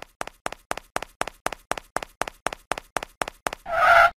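Cartoon footstep sound effects: quick, even taps, about six a second, growing louder as the animated mascot runs across. Near the end they give way to a short pitched sound effect.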